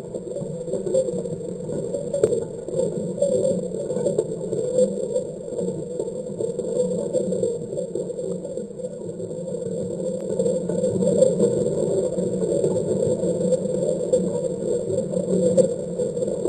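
Underwater microphone on a shrimp trawl's grate picking up the dense crackling and ticking of shrimp striking the grid, over steady high electronic tones. The more shrimp that pass, the louder the crackle, and it grows somewhat louder after the middle.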